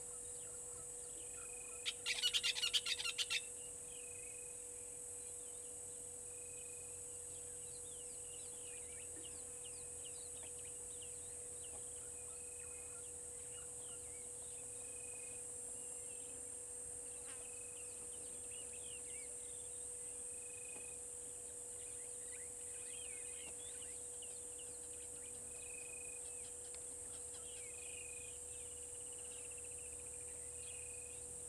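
African bush ambience: a steady high insect drone, scattered bird chirps and a short high note repeated every two to three seconds, over a faint steady hum. About two seconds in comes the loudest sound, a rapid rattling burst lasting about a second and a half.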